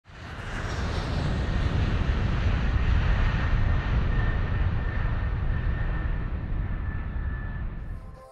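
Aircraft engine rumble: a loud, steady roar heaviest in the low end, its high end slowly fading as it goes on, cut off suddenly at the end.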